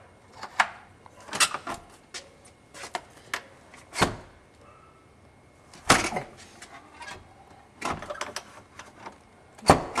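Door knob and lock being worked by hand: irregular sharp clicks and knocks, a few of them louder, as the door is handled.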